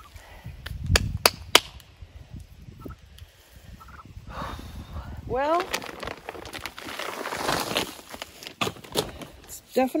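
Hands digging and rustling through loose garden soil and footsteps on the dirt bed, with three sharp clicks about a second in and a short rising voice sound about halfway through.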